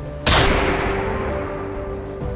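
A single handgun shot about a quarter second in, sudden and loud, its sound dying away over about a second and a half, over sustained dark soundtrack music.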